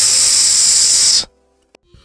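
A steady, loud hiss of white-noise-like rushing, the kind of sound effect laid under a video transition, cutting off suddenly just over a second in.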